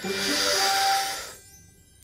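A cartoon character taking one long, deep breath in through the mouth: a hissing inhale of about a second and a half that fades out, over soft background music.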